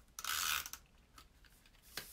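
Stampin' Up! Snail tape-runner adhesive being rolled across paper: one short ratcheting whirr of about half a second near the start, followed by a few faint clicks.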